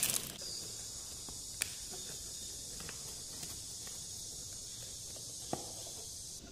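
Quiet steady hiss with two faint short clicks, one about a second and a half in and one near the end, from hands handling a plastic scoop and the opened foil seal of a milk-powder can.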